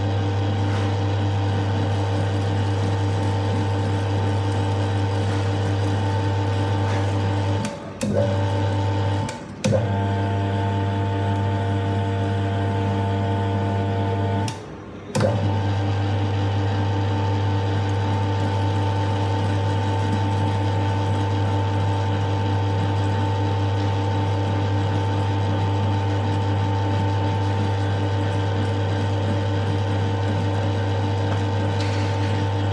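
Commercial electric meat grinder running steadily as beef is fed through it and minced, a loud, even motor hum. The hum briefly drops away three times in the middle.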